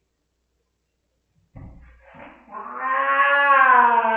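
A cat's long, drawn-out yowl that rises slightly and then sinks in pitch, starting about two and a half seconds in after a soft thump and a short hiss-like noise. It is a distressed cat protesting a spot-on flea treatment being applied to her.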